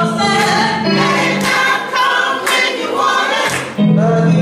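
Gospel choir singing in church, many voices holding and sliding between sustained notes.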